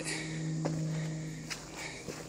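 Footsteps of a person walking over the forest floor, a few faint steps, under a steady low hum that fades out about a second and a half in.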